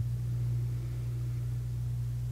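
A steady low hum under faint room noise, with no other events.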